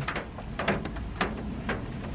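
Crunchwraps being eaten: a few short, sharp crackles from the crunchy filling being chewed and the paper wrappers being handled, over a low steady hum.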